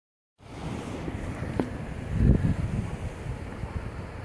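Surf washing over rocks at very low tide, with wind buffeting the microphone in low rumbling gusts, the strongest about two seconds in. The sound starts about half a second in.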